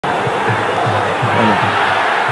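Steady stadium crowd noise from a football broadcast, with low voices mixed into it.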